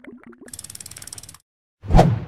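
Sound effects of an animated end card. There are a few short pitched blips, then about a second of fast, ratchet-like clicking with a hiss, then a loud thump near the end.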